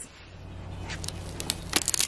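Handling noise: a run of sharp, irregular clicks and rustles in the second half, over a steady low hum.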